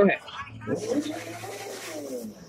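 A woman's voice answering, quieter and away from the microphone, in drawn-out, hesitant tones, over a low steady hum.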